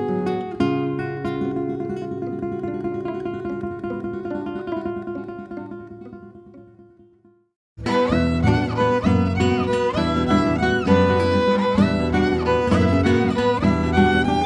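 Acoustic guitar played solo, its ringing notes fading away to silence about seven seconds in. A moment later a violin and acoustic guitar begin together suddenly, the violin's melody sliding and wavering above the plucked guitar.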